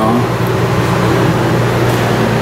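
Paint booth's exhaust and intake fans running steadily: an even rush of air over a low hum.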